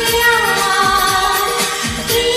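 A woman singing a Hindi film song, holding a long note, over a karaoke backing track with a steady beat.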